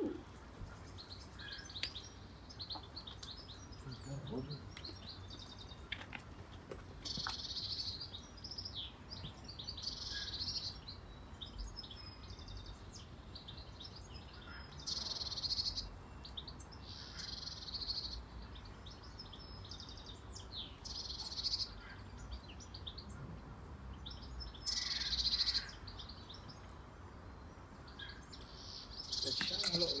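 Small birds singing in short high-pitched phrases every few seconds, over a low steady rumble.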